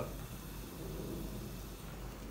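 Faint, steady low rumble and hiss from a Dualit Lite electric kettle full of just-boiled descaling solution, held tipped forward.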